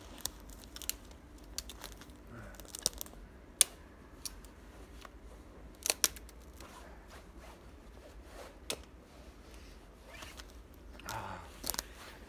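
Dead conifer twigs and small branches being snapped by hand for firewood: scattered sharp snaps and cracks with rustling in between, the loudest about three and a half and six seconds in.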